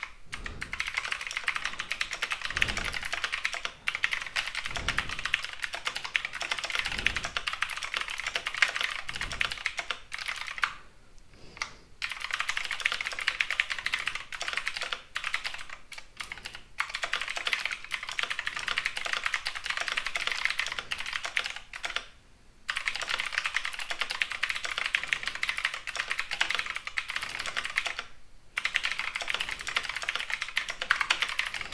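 Typing on a computer keyboard: a fast run of keystrokes with a few short pauses, around a third of the way in, halfway through and near the end.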